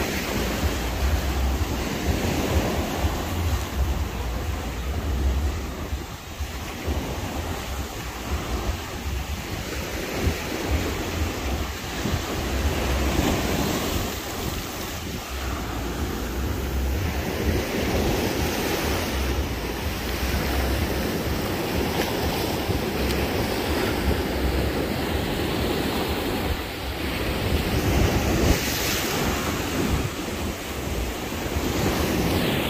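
Small surf breaking and washing up over a sandy, pebbly shore, with wind rumbling on the microphone.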